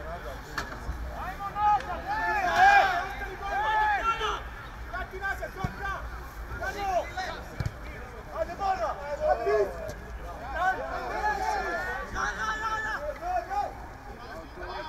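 Footballers shouting and calling to one another across an outdoor pitch during play, raised voices coming in short overlapping calls, with two brief dull thuds midway.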